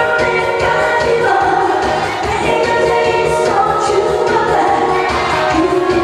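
A woman singing a Korean popular song live into a handheld microphone over a musical accompaniment with a steady beat.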